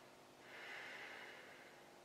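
A faint breath from the narrator, about a second long, in near-silent room tone.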